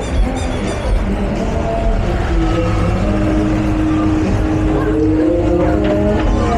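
A motorbike engine running close by over general street noise. It holds a steady note for a few seconds and rises a little in pitch near the end.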